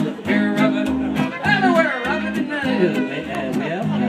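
Live country band music between sung verses: an upright bass plucked in a steady bouncing beat under strummed guitar, with a sliding high melody line over it in the middle.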